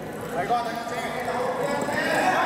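Voices in a large indoor sports hall, with light knocks from the ball being touched and feet moving on the court, one louder about half a second in.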